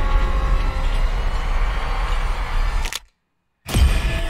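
Horror film trailer soundtrack: a steady, low, ominous rumbling drone. It cuts to dead silence about three seconds in, then comes back with a sudden loud hit just before the end.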